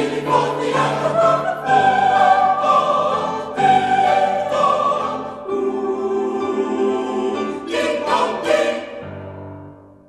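Salvation Army songster choir singing the closing phrase of a hymn in sustained chords, ending on a long held final chord that swells briefly and then dies away near the end.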